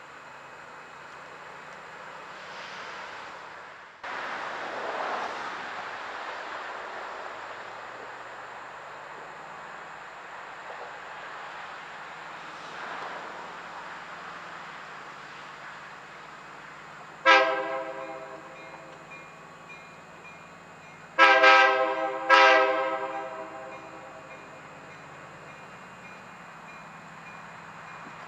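BNSF diesel locomotives running as the train pulls out, the engine sound stepping up about four seconds in. The locomotive horn sounds three short blasts: one, then a pair about four seconds later, each trailing off in an echo.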